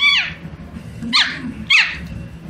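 Small dog giving three short, high-pitched barks, each falling in pitch: one at the start, then two close together a little past a second in.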